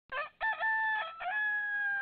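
A rooster crowing once: a few short notes, then a long held final note that falls slightly in pitch.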